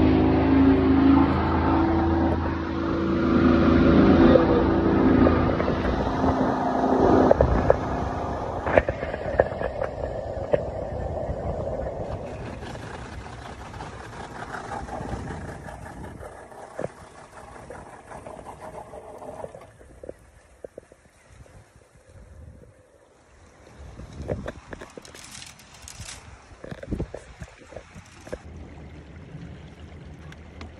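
Motorboat engine running, loudest in the first several seconds, then fading away by about twelve seconds in. After that it is quieter, with scattered light knocks.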